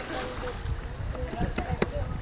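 People's voices talking indistinctly over a steady low rumble, with a few sharp clicks about a second and a half in.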